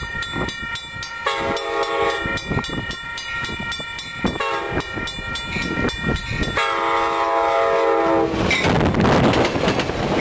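Amtrak passenger train's locomotive horn sounding the grade-crossing signal as the train approaches: a long blast, a short one, then a longer one, over a bell ringing rapidly. Near the end the horn stops and the rumble and clatter of the train's wheels on the rails take over as it reaches the crossing.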